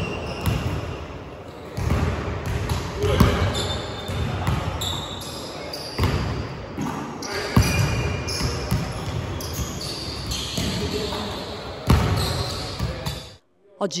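Basketballs bouncing on a hardwood gym floor during shooting practice: irregular thuds that echo in a large hall, mixed with players' voices. The sound cuts off abruptly near the end.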